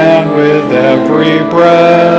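Congregation singing a hymn with accompaniment, in long held notes that change pitch every half second or so.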